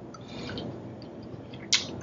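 Close-miked eating sounds of a person chewing a prawn: faint wet mouth clicks, then one sharper wet smack near the end as she sucks her fingers.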